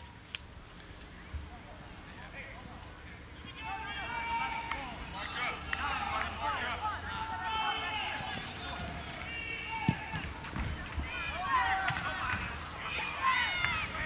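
Distant voices of players and onlookers shouting and calling across an outdoor soccer field. The calls begin a few seconds in and build toward the end. About ten seconds in there is a single sharp thump of the ball being kicked.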